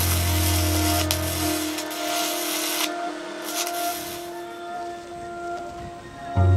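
Stick-welding arc crackling and hissing as the electrode burns, over background music with long held tones. The crackle stops about three seconds in and comes back briefly half a second later.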